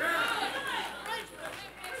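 Several voices of a church congregation calling out responses, quieter than the preacher's voice on either side.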